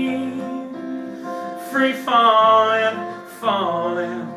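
A singer holding long notes that slide up and then down in pitch, with no clear words, over steady accompanying chords from a music cover performance.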